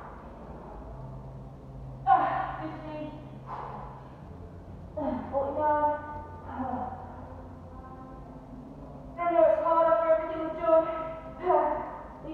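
A woman's voice in three drawn-out stretches of fairly level pitch, over a low steady hum.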